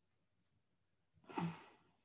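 Silence for the first second, then one short breathy sigh from a person, with a brief hint of voice in it.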